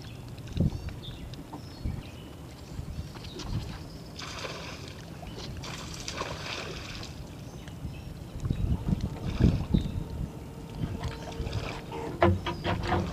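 Wind rumbling on the microphone on an open boat deck, with two short hissing bursts about four and six seconds in and heavier low buffeting or knocks near the end.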